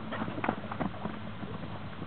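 Hoofbeats of several horses running close by over dry, hay-strewn dirt: a quick, irregular patter of dull thuds.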